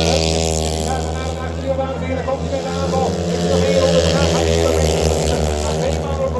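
Longtrack racing motorcycles running at racing speed, a steady, sustained engine drone from the bikes circling the dirt oval.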